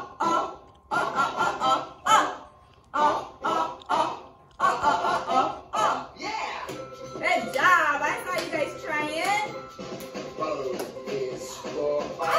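A children's alphabet song for the letter O playing from the projected video: a man's voice over music, with short chanted words in the first half and longer sung notes later.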